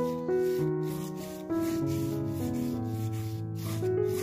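Paintbrush rubbing acrylic paint across canvas in repeated short strokes, over soft background music with slow held notes.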